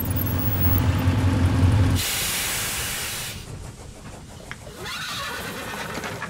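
Motorcycles riding past with their engines running, growing louder for about two seconds. Then the sound cuts abruptly to a loud burst of steam hiss from a locomotive, which fades away.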